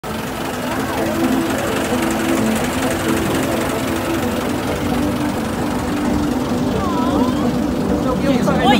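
Engine of a vintage Rolls-Royce running steadily, a low even rumble with a rapid, regular firing beat, with faint voices over it.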